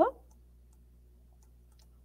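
A few faint, scattered clicks of a computer mouse over a low steady hum.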